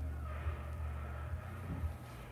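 Quiet room tone: a steady low hum with a few soft knocks.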